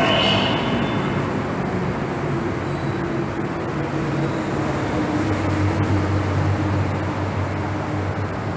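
A rail-transit train running past along the station platform and pulling out: steady running noise with a low hum that strengthens in the second half.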